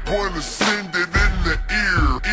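Chopped and screwed hip hop track: slowed, pitched-down rap vocals over a heavy bass beat.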